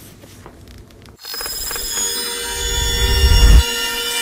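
Logo-reveal sound effect: after a second of quiet, many steady high ringing tones come in over a low swell that builds and then drops away sharply about three and a half seconds in.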